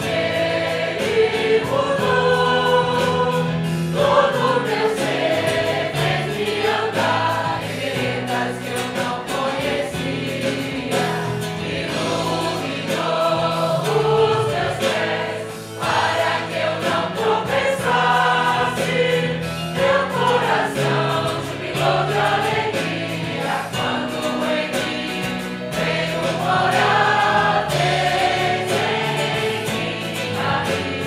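A group of voices singing a hymn together, accompanied by a church band of guitars, strings and keyboard, in long held notes over a steady low bass line.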